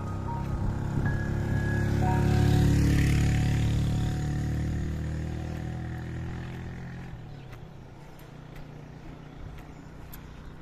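A motorcycle engine approaching and passing close by, loudest about three seconds in and fading away by about seven seconds. A few soft music notes sound over the first two seconds.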